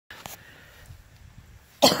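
A single short, sharp cough near the end, the loudest sound, over faint low background noise with a small click early on.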